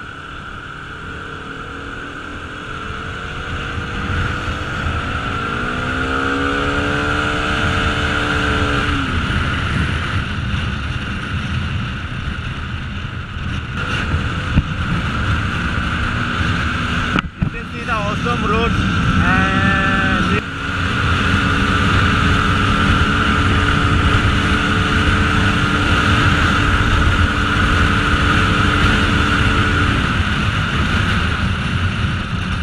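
Bajaj Pulsar RS200's single-cylinder engine running at road speed, with wind rushing on the microphone. The revs climb for a few seconds early on, and the sound drops out sharply for a moment about 17 seconds in and dips again near 20 seconds.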